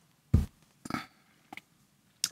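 Handling sounds from a plaster slip-casting mold being tilted and turned on a workbench: a thump about a third of a second in, a shorter noise near the one-second mark, and a faint tap.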